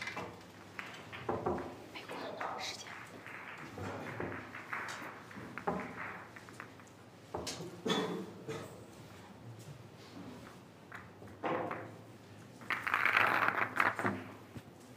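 Billiard balls clacking together in a string of separate knocks as they are gathered and set into the triangle rack on the table, with a denser rattle of about a second near the end as the rack is settled.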